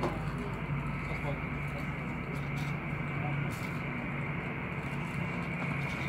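Steady hum and whine of a taxiing easyJet Airbus A320-family airliner's twin jet engines at idle, heard through the terminal glass, with faint voices nearby.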